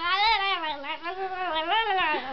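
A young child's high-pitched, wordless sing-song vocalising: a long wavering note that rises and falls in pitch, with a short dip about halfway through.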